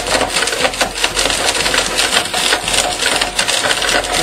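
Blendtec blender running at full speed with golf balls and their broken pieces clattering hard against the jar, a dense continuous rattle over the motor's faint whine. The balls are breaking up only slowly.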